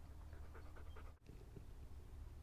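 Siberian husky panting softly, a quick run of short breaths, broken off briefly just past a second in.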